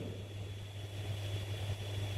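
Room tone between sentences: a steady low hum with a faint hiss.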